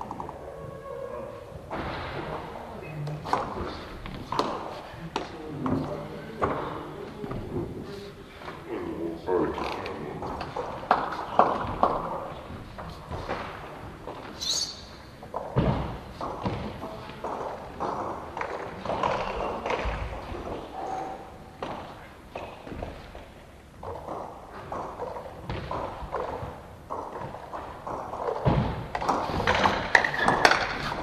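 Voices talking in a large, echoing hall, with scattered thuds and knocks, and a brief high squeak about halfway through.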